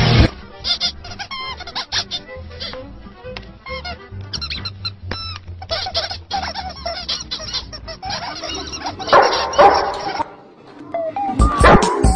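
Squeaky chirps, peeps and clicks of cartoon birds playing from a TV's soundtrack over a low steady hum, with a louder stretch of squawking about nine seconds in. Just before the end a cut brings in loud background music.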